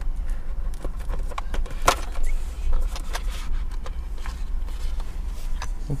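Small cardboard-and-plastic gift box being opened by hand: scattered light clicks, scrapes and knocks of the packaging and its plastic tray, the sharpest about two seconds in, over a steady low hum.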